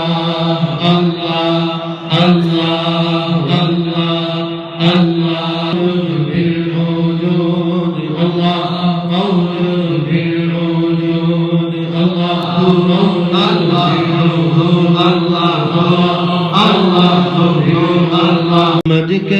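Group of men chanting a devotional litany together through microphones, holding long steady notes, with a few sharp beats cutting through in the first seconds.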